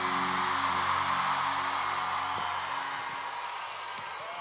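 The band's final held chord of a live ballad fading out over about three seconds, under a large arena crowd cheering and screaming.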